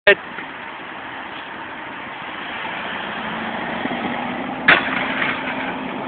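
A BMX bike rolling up, its noise slowly growing louder, then a single sharp metallic clank about three-quarters of the way through as the pegs hit the rail, followed by scraping as they grind along it.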